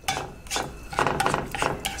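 Spatula scraping and knocking against a frying pan as chopped tofu is stirred and pushed around in it, several strokes in a row.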